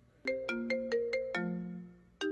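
A mobile phone ringtone playing a melody: a quick run of six short notes, then a longer low note that fades away.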